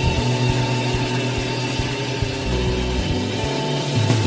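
Filipino OPM rock song playing, a band with guitars, bass and drums.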